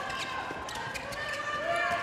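A handball being bounced on an indoor court, with players' shoes squeaking on the floor.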